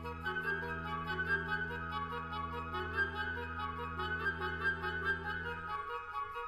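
Contemporary chamber ensemble playing: flute and other instruments come in together in high, rapidly pulsing notes over a sustained low drone. The low drone drops out near the end.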